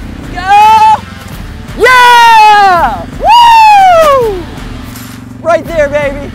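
Excited riders whooping: three long, loud yells that swoop up and then fall in pitch, then a short shout near the end, over the steady low hum of a four-wheeler (ATV) engine running.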